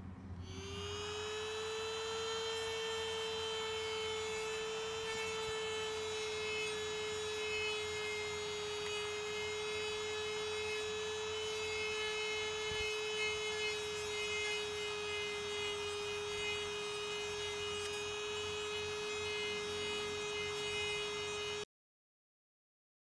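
Handheld rotary tool with a sanding drum whining at high speed as it sands filler on a diecast model car body. It spins up about half a second in, holds one steady pitch, and cuts off suddenly near the end.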